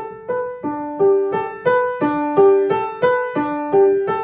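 Upright piano playing a repeating figure of single notes, about three a second, growing gradually louder: a crescendo.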